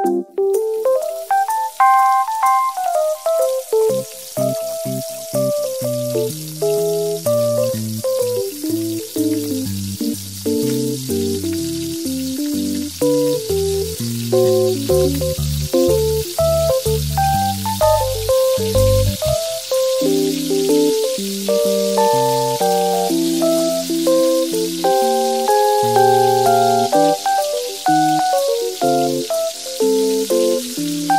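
Background music with a melody of short notes, over the steady sizzle of round tofu balls deep-frying in hot oil. The sizzle sets in about a second in, as the first balls go into the oil, and grows as more are added.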